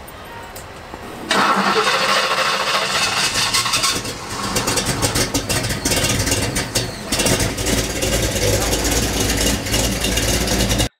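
Engine of a classic 1950s Ford pickup truck starting about a second in and then running loudly, being restarted after it had died out.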